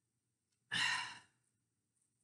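A woman's sigh, a single breathy exhale about two-thirds of a second in that fades out within half a second.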